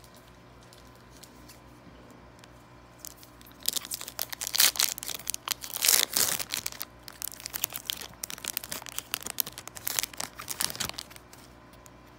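A foil Yu-Gi-Oh! booster pack being torn open and crinkled by hand, starting a few seconds in as a dense run of crackling rustles that stops about a second before the end.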